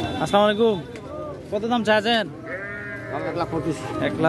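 Men's voices calling out loudly in a livestock-market crowd, in three or four short loud calls over a steady background murmur.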